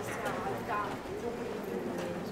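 Passers-by talking, with footsteps clicking on stone paving.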